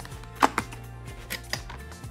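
Cardboard presentation box being opened: a few sharp taps and knocks as the lid comes off and the folded flaps spring open, the loudest about half a second in.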